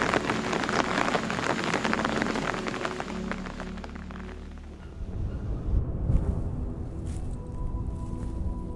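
Rain pattering, a dense crackle of drops that fades out over the first four seconds. Music follows, with held tones over a low rumble.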